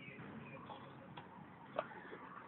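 Faint outdoor background noise with a few soft clicks, the clearest one near the end.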